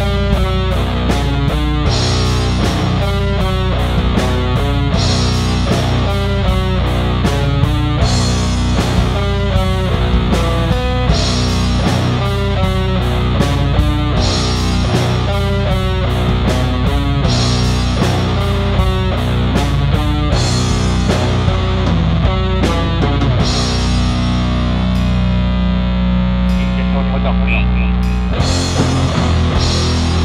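Black/doom metal recording: distorted electric guitars over bass and drums with regularly repeating cymbal and drum hits. From about two-thirds of the way through the drums thin out, leaving sustained guitar chords, and the drums return shortly before the end.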